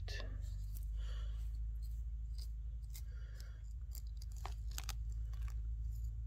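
Crackling and snapping of dry conifer-needle litter and small twigs as hands work mushrooms loose from the forest floor, with scattered sharp clicks over a steady low rumble.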